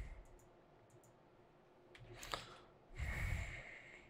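Faint room tone with a single sharp click about two seconds in, then a short breath out, heavy through the nose, near the end.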